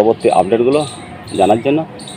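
Only speech: a man talking, in two short phrases with a brief pause between them.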